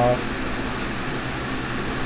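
A steady background hum and hiss with no distinct events, after the end of a spoken word at the very start.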